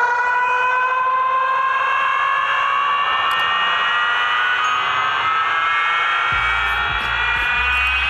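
Strom Audio carnival sound system with its wall of speakers and subwoofers playing a long, loud electronic tone that slowly rises in pitch. Deep bass thumps come in about six seconds in.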